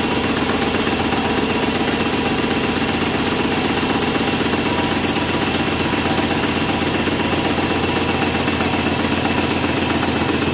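Small electric airless paint sprayer's pump running steadily with a fast even pulse, the spray gun held open into a bucket to purge water out of the hose until paint comes through.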